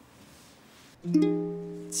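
Ukulele: after about a second of quiet room tone, a chord is plucked and rings out, fading slowly, then a second strum comes near the end as the song's accompaniment begins.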